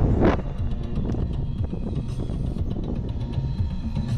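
Road and wind noise of a moving car through an open window, loudest in the first fraction of a second and then dropping to a low rumble. Background music plays faintly under it.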